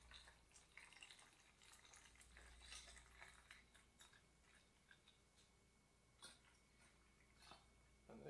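Very faint trickling and dripping of distilled water poured from a plastic jug into a PC water-cooling reservoir, barely above room tone.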